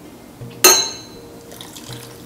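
Water poured from a glass carafe into a copper saucepan to loosen sugar syrup that has crystallised. One sharp ringing clink comes about half a second in.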